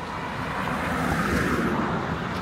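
A car driving past on the street, its engine and tyre noise swelling over the first second or so and easing slightly near the end.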